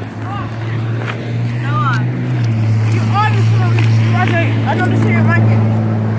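A vehicle engine running with a steady low hum that grows a little louder about two seconds in, under scattered indistinct voices.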